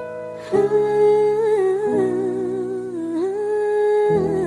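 Country gospel music: a solo voice holds long notes with vibrato, changing pitch about two seconds in, over soft sustained instrumental backing.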